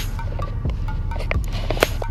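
Background music with a steady bass beat, and a few sharp clicks, the loudest near the end.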